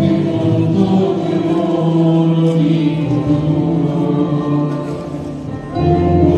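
Church choir singing a hymn in long, held notes. The singing dips in level near the end, then comes back in strongly.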